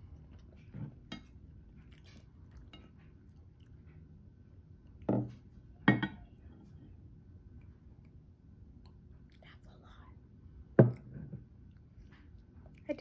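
Eating at a table: soft chewing and faint clicks of wooden chopsticks on a plate, with three sharp knocks, two about five and six seconds in and one near the end.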